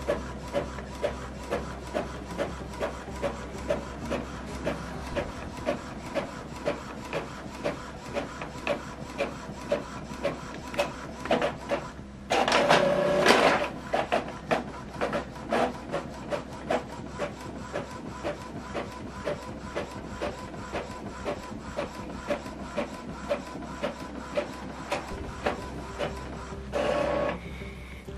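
Epson EcoTank ET-2860 inkjet printer printing a page: the print head carriage shuttles back and forth with a regular click about twice a second. A louder, steadier motor whir comes in for about a second and a half, about twelve seconds in, and briefly again just before the end.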